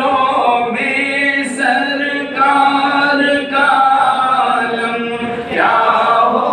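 Unaccompanied voice singing a naat, an Urdu devotional poem in praise of the Prophet, in long held notes with short breaks between phrases.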